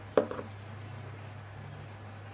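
Two quick, light taps about a fifth of a second in, from a hand handling the paper planner page, over a steady low hum.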